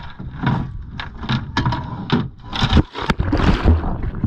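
Wind and water noise on a boat-mounted camera, with irregular knocks and bumps throughout and a low rumble.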